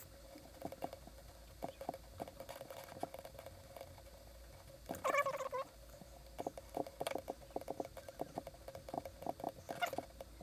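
Light, irregular clicking of a computer mouse, several clicks a second, over a faint steady hum. A brief louder sound comes about five seconds in.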